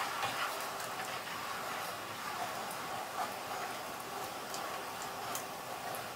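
Steady hiss of a steaming saucepan of boiling pasta and a pan of sausages cooking, with a few faint clicks of the spoon against the saucepan as the pasta is stirred.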